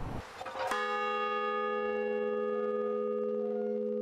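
Large bronze bell struck once a little under a second in, then ringing on steadily with a deep hum and many bright overtones.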